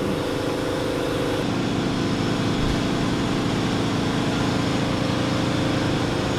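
Steady mechanical hum made of several held low tones, with a slight change in its tone about a second and a half in.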